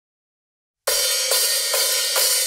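Drum kit cymbals played alone to open a rock song, starting just under a second in: a steady pattern of strokes a little over two a second, bright and ringing, with no bass underneath.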